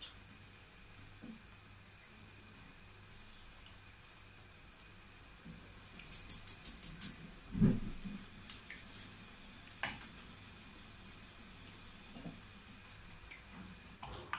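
Beans and vegetables sizzling gently in a frying pan over a gas burner, a steady low hiss. About six seconds in there is a quick run of light clicks, then a louder knock, as the wooden spoon meets the pan.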